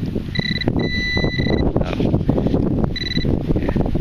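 Garrett Pro-Pointer pinpointer beeping, three beeps of a steady high tone (short, long, short), alerting on metal close by as it is probed around the dug hole. Underneath is a continuous rough scraping and rustling of a gloved hand working through the soil.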